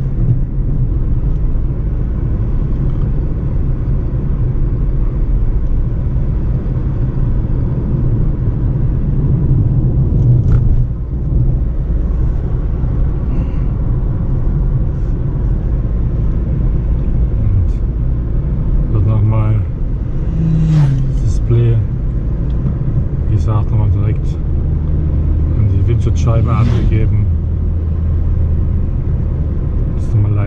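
Steady low rumble of a Mitsubishi car's engine and tyres heard from inside the cabin while driving at moderate speed.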